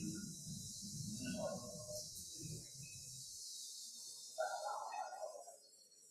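Faint, indistinct voices and room noise in a reverberant meeting room, heard over a video call's audio. The low room rumble drops out about halfway through.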